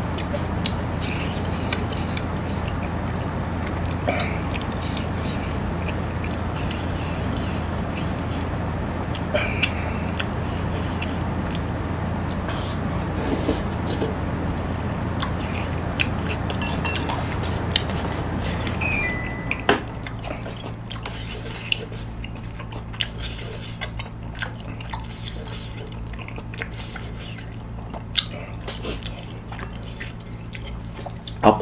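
A person chewing and biting spicy tteokbokki rice cakes and chicken, with scattered small clicks of chopsticks and utensils against the dishes. All of it sits over a steady low hum that drops and changes about two-thirds of the way through.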